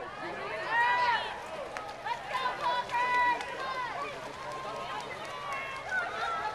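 Spectators' high-pitched shouts and calls of encouragement at a water polo game, loudest about a second in and again around three seconds in, over the steady background of the pool crowd.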